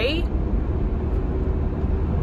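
Steady low rumble of car cabin noise, engine and road noise heard from inside the car.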